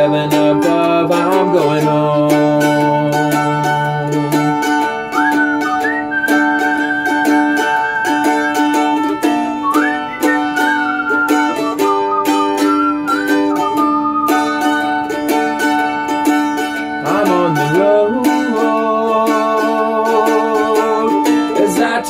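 Mandolin played with quick, closely spaced pick strokes over sustained chords, carrying a slow hymn-like tune.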